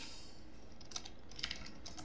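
Computer keyboard being typed on: several separate, quiet keystrokes.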